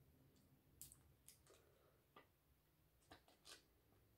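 Near silence: room tone with about seven faint, short clicks and crinkles from hands handling a charcoal mud sheet mask and its paper backing.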